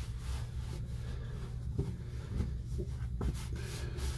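A towel rubbing over a bare, wet forearm to dry it, as faint, scratchy strokes with a few soft ticks, over a steady low hum.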